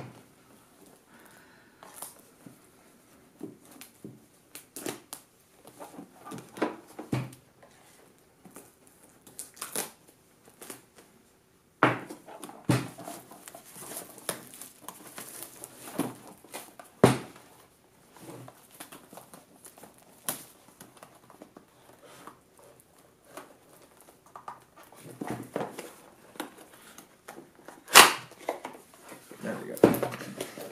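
Clear plastic shrink-wrap crinkling and tearing as it is worked and peeled off a cardboard product box, with irregular sharp crackles and rustles and a few louder sharp snaps or knocks as the box is handled.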